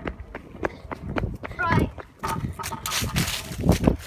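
Stunt scooter wheels rolling fast over paving slabs: a steady low rumble with irregular sharp clacks as the wheels cross the joints.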